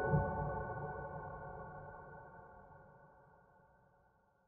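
Piano notes ringing out and slowly dying away to silence over about four seconds, with a faint low hum fading along with them.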